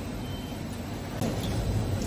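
Electric bidet toilet seat giving one short beep as its rear-wash button is pressed, over a steady low hum. About a second in the noise grows louder as the wash starts running.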